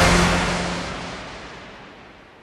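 The closing hit of a radio station jingle dying away: a crash-like noise with a faint low tone under it, fading steadily over about three seconds.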